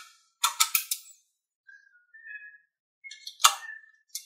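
Small magnetic balls clicking together as a strip of them is pressed into place on a magnetic-ball wall: a quick cluster of clicks about half a second in and one sharp snap near the end, with faint short high tones between.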